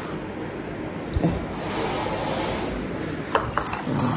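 Rubbing and rustling noise, with a short knock about a second in and another near the end.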